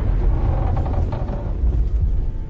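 Action-film car-crash sound effects: a loud, deep rumble with scattered knocks and clatter as a car flips over after a rocket strike.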